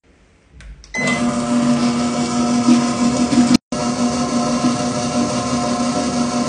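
Commercial stand mixer running steadily with a dough hook turning through slime in its steel bowl: a loud, even motor-and-gear hum that starts about a second in, with a brief break about halfway through.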